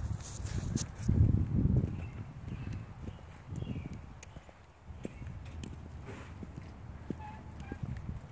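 Footsteps of a person walking on pavement, with irregular low rumbling on the microphone that is loudest about a second in.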